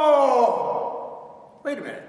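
A man's long held wordless yell, falling in pitch and trailing off into a breathy sigh in the first second, then a short vocal burst near the end.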